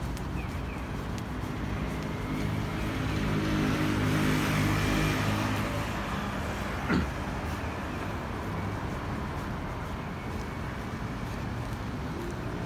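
Road traffic: a motor vehicle passes close by, its engine and tyre noise swelling to a peak about four seconds in and then fading, over a steady traffic hum. A brief sharp click or knock comes about seven seconds in.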